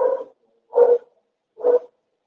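A dog barking repeatedly, about one bark every second.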